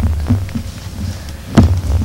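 Low steady hum with a few soft low thumps and one sharp knock about one and a half seconds in: handling noise at a desk microphone.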